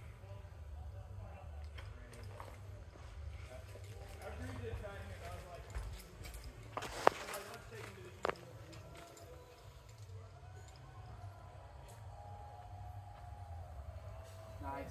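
Faint, indistinct voices over a steady low rumble on the microphone. A sharp click about seven seconds in is the loudest sound, and a softer click follows about a second later.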